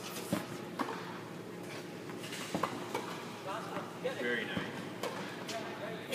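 Tennis balls being hit by racquets and bouncing on an indoor court: a handful of sharp pops at irregular intervals, with faint voices in the background around the fourth second.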